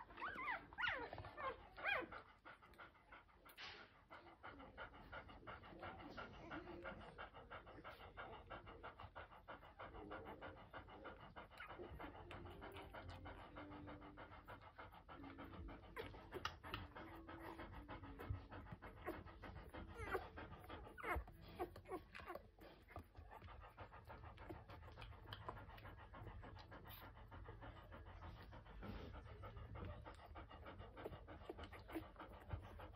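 Golden retriever mother panting steadily and faintly while nursing a litter of ten-day-old puppies. A few high squeaks from the puppies come in the first two seconds.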